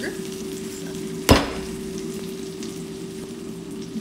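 A single sharp clack about a second in, as a metal spatula is set down on a wooden cutting board, over a steady hiss and low hum.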